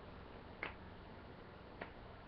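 Two faint, sharp clicks, about a second apart, over quiet room hiss.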